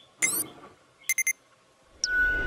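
Sound effects of an animated subscribe-button overlay: a short rising swoosh, then three quick, high, bell-like dings just after a second in, as the notification bell is rung.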